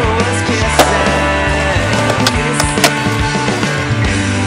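Skateboard sounds with music running underneath: sharp clacks of the board, the loudest about one second in and just before three seconds.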